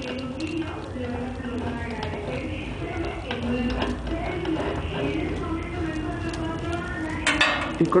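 Light metal clinks and scrapes of a stainless-steel nozzle being worked loose and pulled off the outlet of a piston filling machine, with low voices murmuring underneath.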